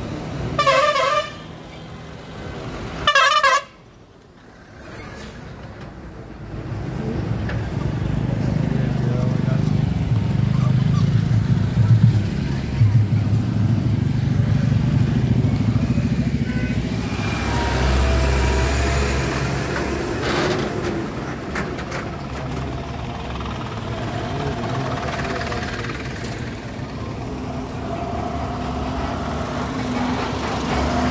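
Road traffic: two short vehicle horn honks about two seconds apart, then steady engine and road noise that grows louder from about six seconds in as heavy vehicles pass close by.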